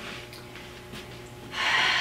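A young woman's loud breathy sigh, an audible exhale with a little voice in it, starting about one and a half seconds in over a faint steady hum of room tone.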